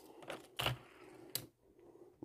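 Three light clicks and knocks of small die-cast toy cars being handled and set down, the middle one loudest, over a faint steady hum.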